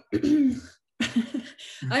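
A woman clearing her throat between halting words of speech.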